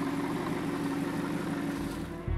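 Audi R8 V10 engine running steadily at low revs as the car rolls slowly along. It is an even, unchanging sound with a faint steady tone and no revving.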